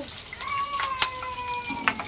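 Peanuts and spices spitting in hot oil in a steel wok: a few sharp pops, which the cook finds scary for how hard they burst. Over them a long, high, slowly falling call is drawn out for over a second.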